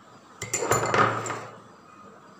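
A metal spoon clinking against a small glass bowl of paste: a couple of sharp clicks about half a second in, then about a second of scraping against the glass.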